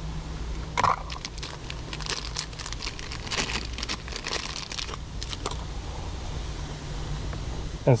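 Small cardboard box and plastic packaging being opened and handled: a run of crinkly, crackling rustles over a steady low hum.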